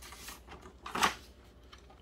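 A picture-book page being turned, with one short paper swish about halfway through.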